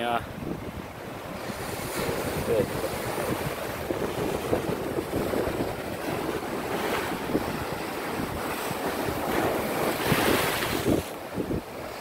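Ocean surf washing against rocks, with wind buffeting the microphone; the wash swells louder about ten seconds in.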